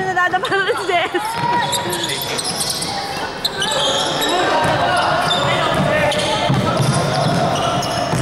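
Basketball bouncing as it is dribbled on a wooden gym court, with players' and spectators' voices and shouts ringing around a large hall.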